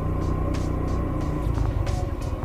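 Rusi Gala 125 scooter's engine running steadily under way, turning uneven in the last half second. Background music with a steady beat plays over it.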